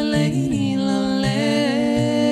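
Layered a cappella female voice built up on a loop station: several wordless sung notes held together in harmony over a lower looped vocal line, moving to new pitches a couple of times.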